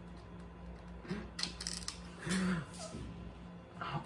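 Faint clicks and knocks of a plastic toy BB gun being handled as a light is fitted to its rail, with several small clicks in quick succession between one and two seconds in.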